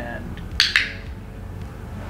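A training clicker pressed and released once, two sharp clicks in quick succession about half a second in, marking the macaw's wings-up as the correct behaviour that earns a treat.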